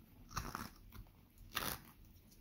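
Carving knife slicing shavings off a small block of wood: two short, crisp cuts about a second apart.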